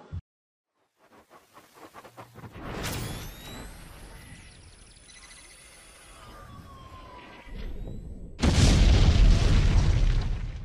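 Logo-intro sound effects: a stuttering build of clicks leads into a sharp whooshing hit with sweeping tones. Near the end comes a loud sound-effect explosion boom that rumbles and dies away.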